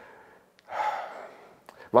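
A man's audible breath out, a breathy sigh lasting about half a second, as he pauses to think mid-sentence, followed by a short mouth click just before he speaks again.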